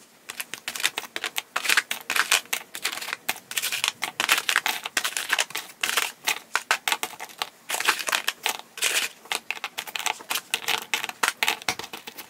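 Small plastic pots of gel polish clicking and knocking against one another as they are set down one after another into a padded kit bag: a rapid, irregular run of light clicks.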